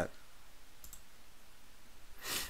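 A computer mouse button clicking once, briefly, a little under a second in, against a faint steady background hum.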